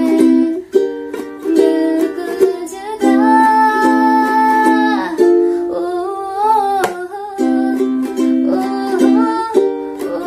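A woman singing a Hindi song while strumming chords on a ukulele (Dm, C, Gm, C). Partway through, the sung words give way to wordless 'ooh' vocalising, with some notes held for a second or two.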